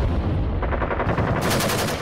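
Rapid automatic gunfire over a heavy low rumble, the shots coming in quick, even succession.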